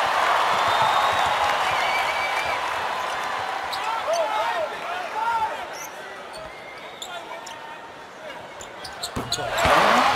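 Arena crowd noise with a basketball being dribbled on a hardwood court. The crowd quiets toward the middle and swells again near the end.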